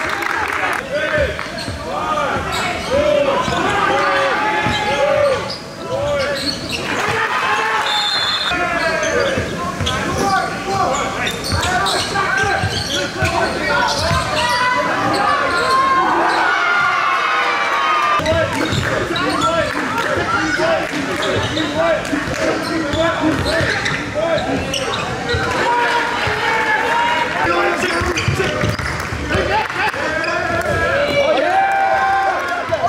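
Live game sound in a gym: a basketball bouncing on hardwood, sneakers squeaking, and players and coaches calling out, with a short high whistle about eight seconds in.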